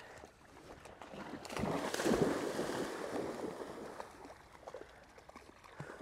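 Shallow floodwater sloshing and splashing as something moves through it, swelling about a second in, loudest around two seconds, then dying away after about four seconds.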